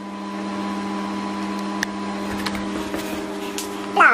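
Cookworks microwave oven running, a steady hum, with a few faint ticks over it.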